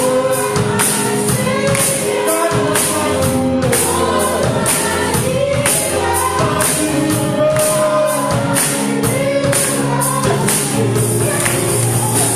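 Several women's voices singing a gospel worship song together through microphones, over a steady percussion beat.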